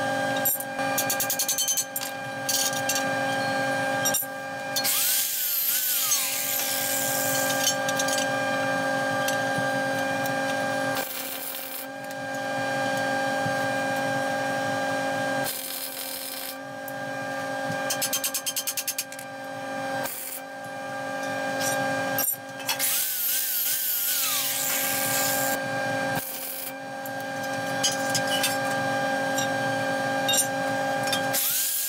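MIG welding on steel plate: the arc crackles in several separate bursts of tack welds and short beads, over a steady hum that runs between them.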